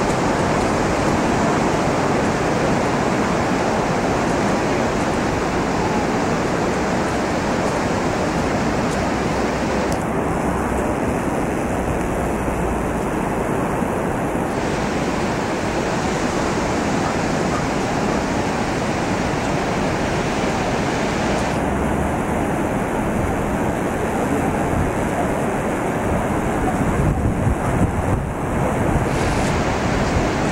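Surf breaking on a sandy beach: a steady wash of waves, with a few gusts of wind buffeting the microphone near the end.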